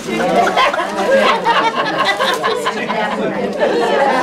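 Several women talking over one another at once: overlapping chatter with no single clear voice.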